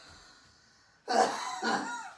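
A man coughing twice in quick succession, starting about a second in.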